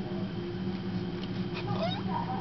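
A steady low hum, with a short wavering, sliding vocal cry in the last half second.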